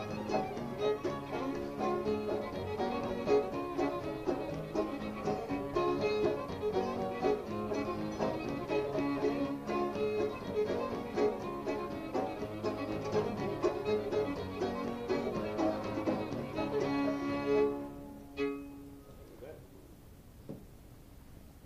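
Old-time fiddle tune played on fiddle with string-band accompaniment, which ends about 18 seconds in; a single knock follows just after.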